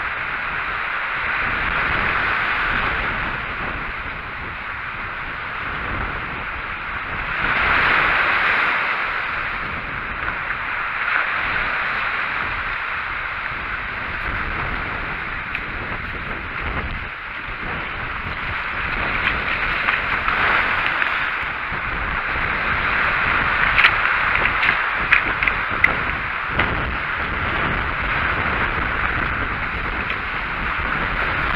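Sea waves breaking and washing over a rocky, pebbly shore, with wind on the microphone; the surf swells and ebbs in surges, loudest about eight seconds in. A few sharp clicks come near the end.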